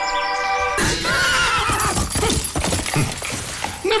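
A held musical chord breaks off a little under a second in. A horse sound effect comes in with a wavering, falling whinny over a sudden crash and rush of noise, followed by dense clattering.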